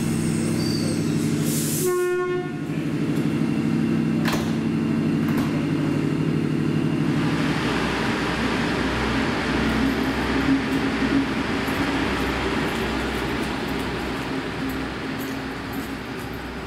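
NSW Xplorer diesel multiple unit's engines running with a steady hum at the platform, with a short horn note about two seconds in. From about halfway the hum gives way to a louder, rougher rumble as the train powers away from the station.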